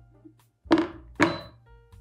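A spatula knocked twice against the rim of a stainless steel saucepan: two dull knocks about half a second apart, each with a short metallic ring.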